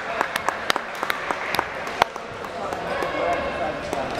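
Scattered handclaps from a few people in a large hall: sharp, irregular claps for about two seconds, one louder than the rest near the middle, then dying away under a murmur of crowd voices.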